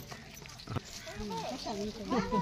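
People's voices talking, with a single short knock about three-quarters of a second in.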